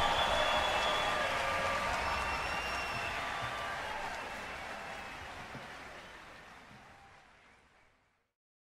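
Large audience applauding, fading out steadily until it is gone about seven seconds in.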